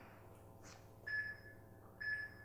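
Faint short electronic beeps about a second apart, each a brief steady two-note tone, like an interval timer counting down.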